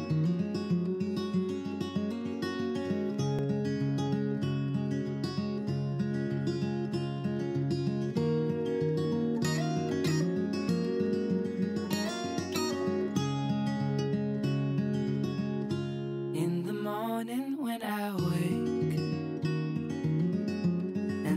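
Background music: an acoustic guitar picking a steady, repeating pattern of notes, with a brief swooping, gliding sound about three-quarters of the way through.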